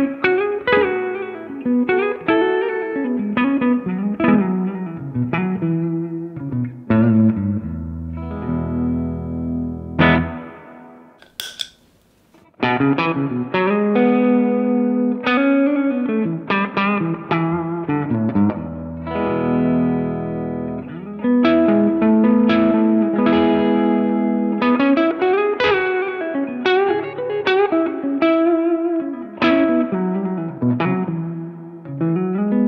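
Electric guitar played through a tube amp with a clean tone, in phrases of picked notes and chords. After about eleven seconds the playing stops briefly with a sharp click, the Ami Effects Umami overdrive pedal being switched on, and the guitar carries on through the pedal.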